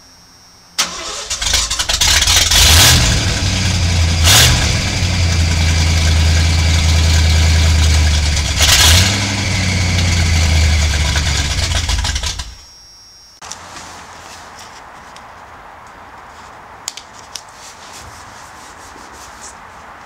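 1986 Ford F250 started up through a new Cherry Bomb glass pack muffler: it cranks and catches about a second in, runs loud with a deep rumble, is blipped a few times, and is shut off about two-thirds of the way through.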